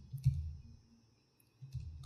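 Keys clicking on a laptop keyboard: a few keystrokes at the start, a pause of about a second, then typing again near the end.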